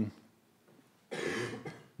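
A single short cough, starting about a second in after a brief silence and lasting under a second.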